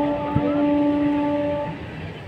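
Train horn sounding one long, steady note that stops shortly before the end.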